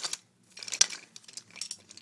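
Rustling and light clicking of small objects being handled, in a few short spells.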